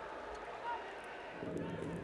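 Faint stadium ambience from a football match broadcast: low, steady background noise with no clear event, and a faint low hum coming in near the end.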